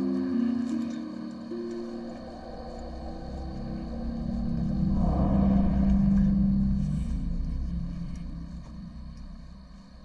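Suspenseful underscore music: sustained low notes that change pitch in steps, under a deep rumble that swells to its loudest about six seconds in and then fades away.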